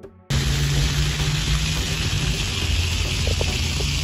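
Background music cuts off just after the start, giving way to a loud, steady hiss of splash pad fountain jets spraying, with a low steady hum underneath.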